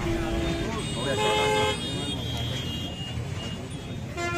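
Vehicle horns honking in short blasts, two plainly and a fainter third, over the talk of a crowd.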